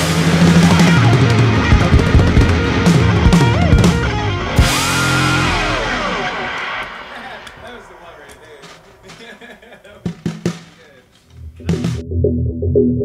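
Background music with drums, loud at first and fading out over the second half. A new track starts just before the end.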